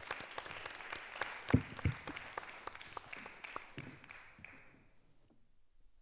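Audience applauding, a dense patter of claps that thins and dies away about five seconds in. Two louder low thumps stand out about a second and a half in.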